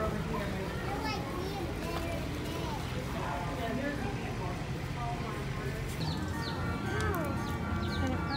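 Background chatter of people's voices. About six seconds in, music with long held notes comes in, along with a few short high squeaks.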